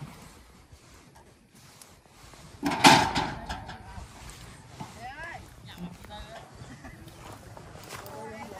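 Faint, distant voices of people calling, with one short, loud burst about three seconds in that stands out above everything else.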